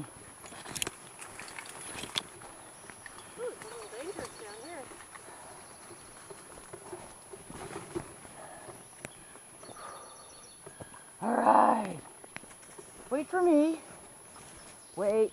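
Three-wheeled dog rig rolling along a dirt trail behind two harnessed dogs, with light scattered clicks and rustling from the wheels, paws and brush. About eleven seconds in there is a loud wavering call lasting under a second, and a shorter one near the end.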